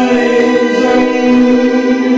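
A male voice singing one long held note, with bowed strings accompanying.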